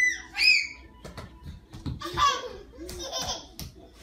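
Toddlers squealing and laughing in high-pitched shrieks, loudest right at the start and again near the middle, with a few sharp clicks in between.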